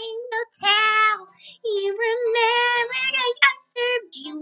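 A high, cartoonish female voice doing a Pinkie Pie impression, singing a run of short, wordless 'da da da' syllables.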